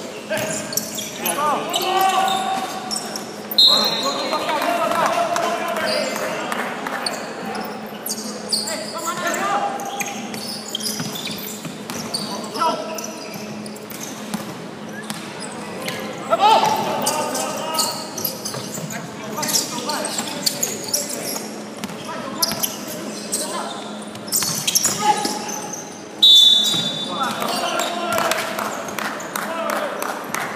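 Indoor basketball game in a large echoing hall: players shouting and calling to each other, and the ball bouncing on the wooden floor. Two short, high whistle blasts from the referee come a few seconds in and again near the end.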